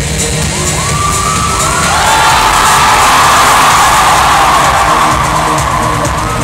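Loud music playing over a stage sound system, with an audience cheering and whooping; the cheering swells for a few seconds in the middle and then eases off.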